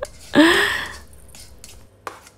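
A short breathy laugh, followed by faint scraping and ticking of a silicone spatula stirring coarse chilli paste in a stainless steel bowl.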